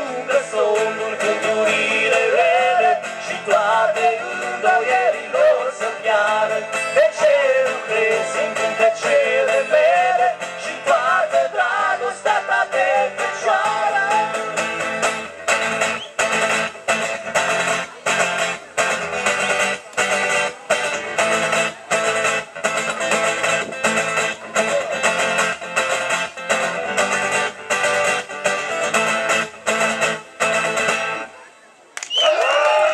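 Live folk band with acoustic and electric guitars, a wavering lead melody over the strumming for about the first half. About halfway in the lead drops out, and the guitars carry on with steady, even strumming over a bass line.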